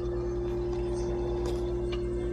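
Steady electrical hum from a ceiling light fitting with a spiral fluorescent bulb: one clear held tone over a lower buzz, with two faint clicks near the end.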